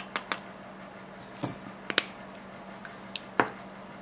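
A few light clicks and taps of small nail tools being handled and set down on a tabletop, spread over the few seconds, with a low steady hum underneath.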